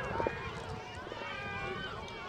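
Distant, unintelligible voices of players and spectators calling across the field, several overlapping, over a steady low rumble.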